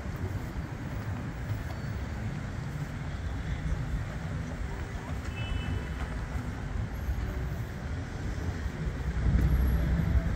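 Outdoor city ambience: a steady low rumble of distant traffic, growing louder about nine seconds in.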